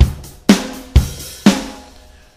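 Drum-kit software instrument played from MIDI in Logic Pro: single kick and snare strokes about two a second, each ringing briefly, the last one about a second and a half in.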